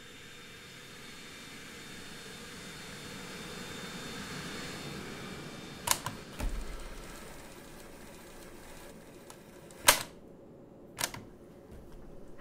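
A steady rushing noise that swells over the first few seconds and then eases, broken by sharp clicks: two close together about halfway through, the second followed by a brief low rumble, then single clicks near the end.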